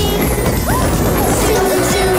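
Children's song music with a cartoon racing-car sound effect laid over it: a loud rushing noise as the car speeds off.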